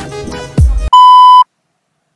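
Edited-in hip-hop music with a deep falling bass hit cuts off abruptly just under a second in, and a loud, steady, single-pitched electronic beep sounds for about half a second, then stops dead into silence.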